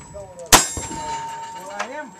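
A single revolver shot about half a second in, followed by the ring of the struck steel target, a steady metallic tone that fades after about a second.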